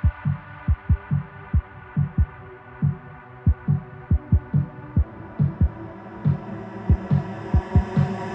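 Hard dance track in a breakdown: deep kick drums that drop in pitch, hitting in an uneven, stuttering pattern over a held synth pad. The treble slowly opens up across the passage.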